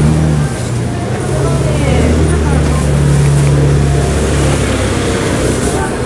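A motor running steadily close by, a low hum that fades out near the end, over the voices of passers-by.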